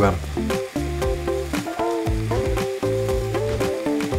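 Chicken, mushrooms and onions sizzling in a frying pan while flour is stirred in with a wooden spatula, with a few short scraping clicks of the spatula. Background music with long held notes plays over it.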